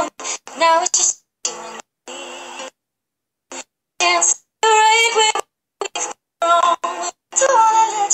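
A woman singing to her own acoustic guitar, the audio breaking up into short fragments with gaps of dead silence between them, the sign of a livestream connection dropping out.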